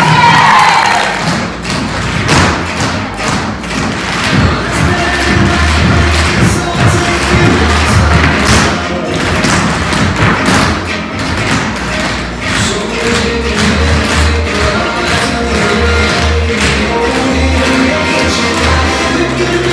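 Tap shoes striking the floor in quick, rhythmic runs of taps from a group of dancers, over loud recorded backing music with a pulsing bass.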